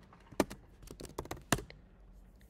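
Computer keyboard keys being typed in an irregular run of clicks, with two louder taps about half a second in and about a second and a half in.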